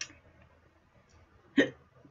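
A woman hiccups once, sharply and briefly, about one and a half seconds in: hiccups brought on by the heat of a hot sauce she has just tasted.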